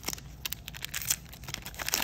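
Magic: The Gathering Ultimate Masters booster pack's foil wrapper crinkling and being torn open by hand, a quick run of crackles and sharp clicks.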